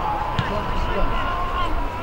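Shouting voices during open rugby play, one held as a long, steady call for nearly two seconds, with a single sharp knock about half a second in.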